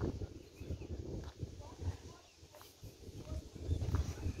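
Footsteps on a paved garden path with wind rumbling on a phone microphone, and a few short high chirps.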